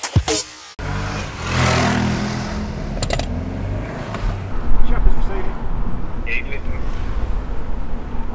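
A short burst of electronic music with a beat cuts off abruptly. Then a motor vehicle's engine is heard driving off, followed by the low engine and road rumble of a car heard from inside its cabin while it is driven in traffic.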